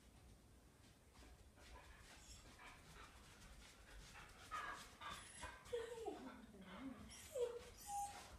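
A dog whining softly a few times in the second half, including one drawn-out whine that falls in pitch.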